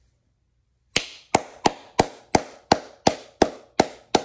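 Silence for about the first second, then a man's hands clapping in a slow, even clap, about three claps a second.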